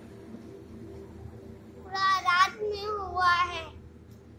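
A child's high-pitched voice making two short, wavering sung or spoken phrases about two seconds in, over a steady low hum.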